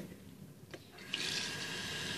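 Bathroom sink tap turned on: a light click, then from about a second in water runs steadily from the faucet into the basin.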